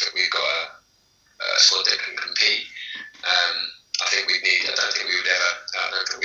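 Speech only: a voice talking over a video call in short phrases, with brief pauses.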